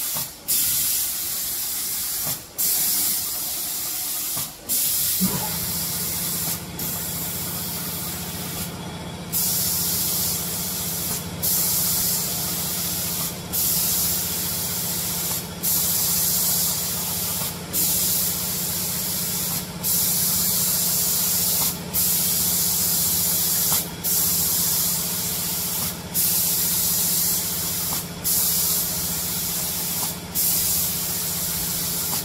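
Automatic paint spraying machine's spray gun hissing as it atomises coating onto wooden door panels, cutting off briefly about every two seconds at the end of each pass. A steady low machine hum joins about five seconds in.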